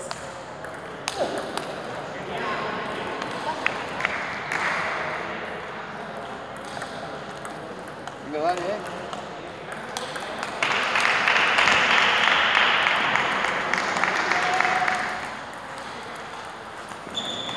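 Table tennis ball clicking against paddles and the table during rallies, with voices in a large hall. For a few seconds near the end a louder rushing noise covers the clicks.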